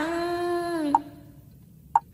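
Backing music of a Vietnamese Buddhist chant: a held melodic note ends about a second in, leaving near quiet, while short percussion knocks keep the beat about once a second, the second knock the loudest.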